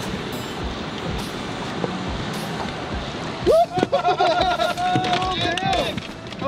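Steady rushing of river water and boat noise. About three and a half seconds in, a loud, long held cry breaks out over a run of knocks as a jack salmon leaps into the boat and flops on the diamond-plate deck.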